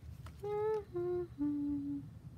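A woman humming three held notes, each lower than the last, the third the longest.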